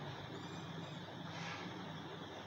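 Steady background noise with a low hum and a faint swell about midway.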